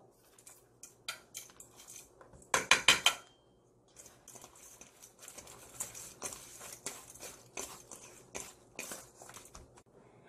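A metal spoon clinking against a stainless steel bowl several times about two and a half seconds in, with a short metallic ring. Then a hand tossing salted, thinly sliced overripe cucumber in the bowl: a run of soft, quick rustling taps.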